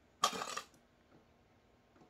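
A brief clatter of small plastic sewing clips, under half a second long, as one is picked up from the table, followed by a faint click or two.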